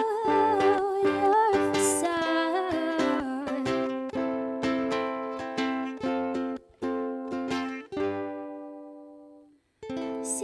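Live song with a woman singing a wavering line over acoustic guitar. The voice drops out about four seconds in while the guitar plays on in plucked chords, and a last chord rings out and fades almost to silence just before the end.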